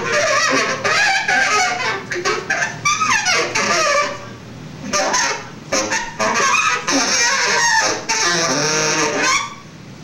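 Overblown free-jazz saxophone, honking and squealing in wavering, sliding pitches, with drums and cymbals clattering underneath. The horn drops back briefly about four seconds in and again near the end.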